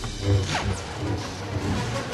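Lightsaber combat: a sharp clash at the start and another about half a second in, followed by a falling swish, over an orchestral film score.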